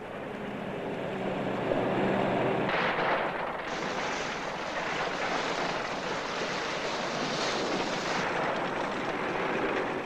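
Heavy earth-moving machinery at work: a steady rushing, rumbling noise with a faint engine hum early on. From about four to eight seconds it turns brighter and fuller as a dump truck tips its load of rock fill into the sea.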